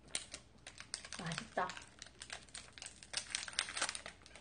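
Plastic wrapper of a wafer bar crinkling and crackling as it is opened by hand, in many quick irregular rustles, with a brief voice sound or two about a second and a half in.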